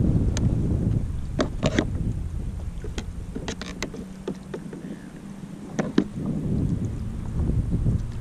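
Wind buffeting the microphone with a low rumble that eases off about halfway through, over scattered sharp clicks and knocks from fishing gear being handled against a plastic kayak.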